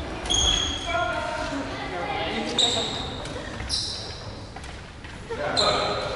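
Rubber dodgeballs bouncing and knocking on a wooden gym floor, with short high-pitched sneaker squeaks several times and players' voices, echoing in a large hall.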